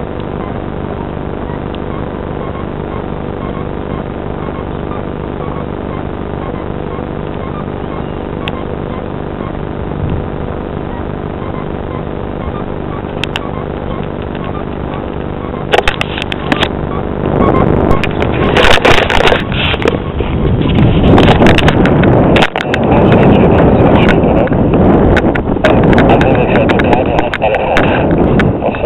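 A steady engine drone with an even, unchanging hum. About halfway through, loud irregular rumbling and sharp knocks close to the microphone take over and drown it out.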